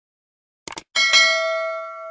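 Subscribe-button sound effect: a quick double mouse click, then a bright bell chime, struck twice in quick succession, that rings on and fades away.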